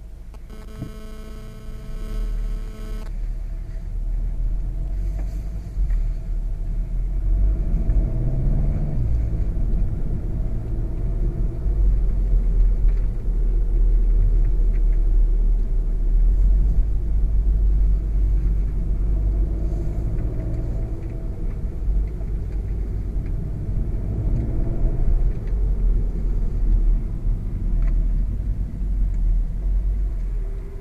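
The 2.0-litre turbocharged four-cylinder engine of a 2016 VW Golf VII GTI Performance pulling along the road over a heavy low rumble. The engine note rises and falls as it accelerates and the gearbox shifts, and it gets louder over the first few seconds. A steady tone sounds for about two seconds near the start.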